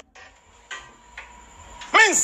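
Faint studio room noise with a faint steady tone, in a brief gap in a man's loud speech; his voice comes back right at the end.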